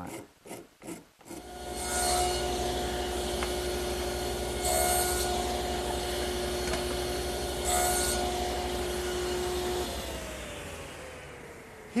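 A few quick scraping strokes of a microplane rasp on the corner of a wooden table leg. Then a table saw starts up and runs steadily, making three brief cuts in small pieces of wood about three seconds apart. Near the end it is switched off and its hum slides down in pitch as it winds down.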